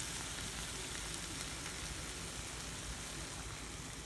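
Cauliflower rice stir fry cooking in butter in a skillet, a steady, soft sizzle as heavy cream is poured in.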